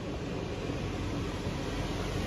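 Steady hiss with a low hum underneath, even throughout with no distinct events.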